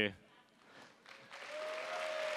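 Large audience starting to applaud and cheer about a second in, building to a steady wash of clapping, with one long whoop from someone in the crowd.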